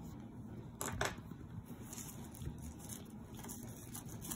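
Faint rustling of tracing paper and carbon transfer paper being handled and lifted, with a couple of light clicks about a second in.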